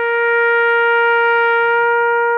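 A soldier's brass bugle call: one long note held steady and loud.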